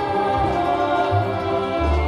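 Live concert music: a band with voices holding sustained sung notes over steady bass notes.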